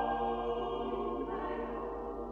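Unaccompanied mixed choir singing a madrigal in several parts, holding a sustained chord that fades steadily quieter.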